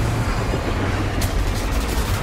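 Storm-sea sound from a war-film trailer: heavy waves crashing over a destroyer, a steady loud rumble with a sharp crack about a second in.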